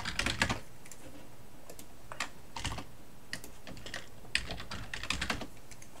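Typing on a computer keyboard: a search query keyed in short bursts of keystrokes with brief pauses between them.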